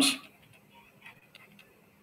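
A few faint, irregular clicks of a stylus tapping on a tablet screen as letters are handwritten.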